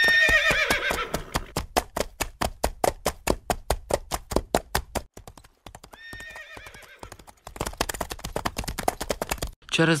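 A horse whinnies, then its hooves clip-clop in an even walking rhythm of about four steps a second. A second, quieter whinny comes about six seconds in, and the hoofbeats pause briefly before going on.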